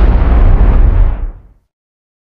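Cinematic boom sound effect of a logo-intro sting, a deep rumble that decays and cuts off about a second and a half in.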